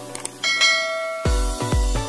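Subscribe-animation sound effects over background music: two faint clicks, then a bright bell ding about half a second in that rings on. From just past a second, music with deep, pulsing bass notes comes in and is louder.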